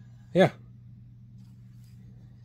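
Only speech: a man says "yeah" once, briefly, about a third of a second in. Otherwise there is just a steady low hum of room tone.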